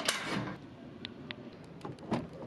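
A metal door's lock being worked: a brief scraping noise, then a few separate sharp metallic clicks.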